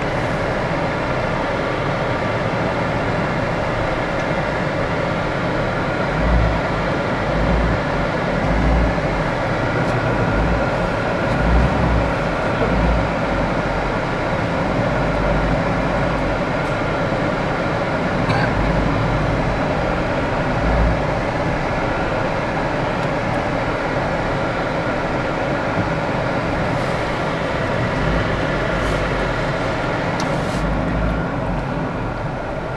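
Vehicle engine running and road noise heard from inside the cabin while it drives slowly on a rough road, with an uneven low rumble.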